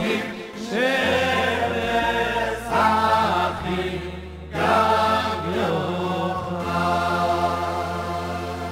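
Several men singing a niggun together into microphones, in phrases, over amplified electronic keyboard accompaniment that holds sustained bass notes.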